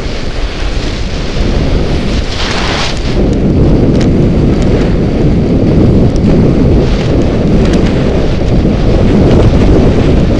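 Wind buffeting the microphone of a skier's camera during a fast run, a loud steady rumble. Over it, skis hiss and scrape on the snow, with a louder scrape about two and a half seconds in, probably a turn on the edges.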